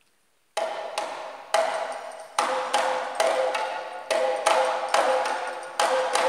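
A set of Cuban batá drums entering about half a second in after near silence, playing an interlocking rhythm of sharp, ringing strokes, about two to three a second.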